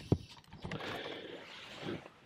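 Tent canvas being handled as a window flap is opened: a short click, then from about half a second in a soft, steady rasp lasting about a second and a half.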